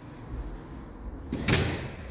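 A house door being opened: one loud sweep of noise about a second and a half in.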